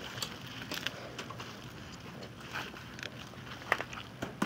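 Faint rustling and crackling of leek leaves and dry garden foliage as a gloved hand grips a leek and pulls it slowly from the soil, with a few sharper snaps near the end.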